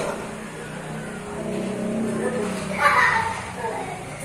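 Indistinct voices in a hall, with a short louder voice about three seconds in.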